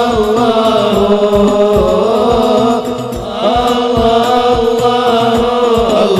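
Male voices singing sholawat, an Arabic devotional chant in praise of the Prophet, through microphones over a steady beat of hand-struck drums. The singing drops away briefly about three seconds in, while the beat goes on.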